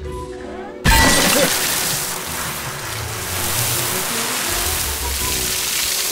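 A drinking fountain bursts into a forceful spray of water, starting suddenly about a second in as a loud hiss that keeps going, over background music.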